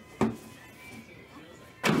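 One sharp thump, a fraction of a second in, from the empty hinged Topps Sterling card box being handled on the table, over faint background music.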